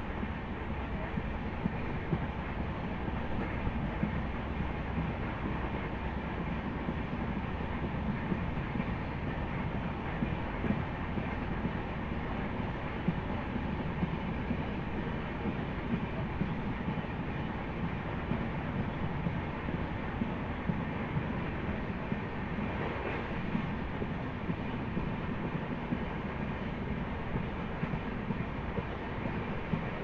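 Passenger train running along the track, heard from an open coach door: a steady rumble of wheels on rail mixed with rushing air, with frequent light, irregular clicks.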